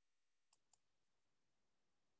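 Near silence, broken by two faint clicks in quick succession about half a second in.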